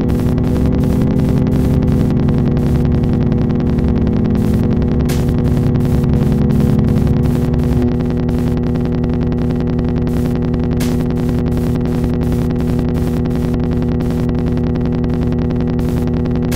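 Electric bass run through effects pedals, holding a dense, layered drone chopped by a fast, even pulsing, with a few brighter clicks. A little before halfway the lowest layer drops and the drone thins slightly.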